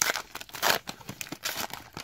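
Foil wrapper of a trading-card pack crinkling and tearing by hand as it is peeled back from the cards. It comes as several short crinkles, loudest at the start and again a little over half a second in.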